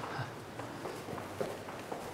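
Quiet footsteps of two people walking on a hard tiled floor, including the clicks of a woman's high heels, a few irregular steps.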